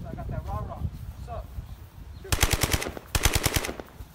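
Two short bursts of rapid automatic gunfire, the first about two and a half seconds in and the second just after three seconds, most likely a gunshot sound effect.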